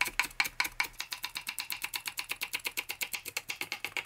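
Kitchen knife finely chopping large green onion on a wooden cutting board: quick, even taps of the blade on the board, several a second.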